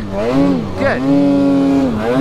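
Snowmobile's two-stroke engine running under throttle, its pitch dipping and climbing again a few times as the rider eases off and gets back on the gas in deep snow.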